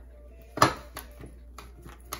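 A sharp knock on the tabletop about half a second in, then a few light clicks, as tarot cards are handled and set down.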